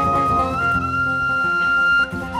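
Irish whistle holding a long high note that slides up slightly about half a second in, over acoustic guitar accompaniment, in an Irish reel played live.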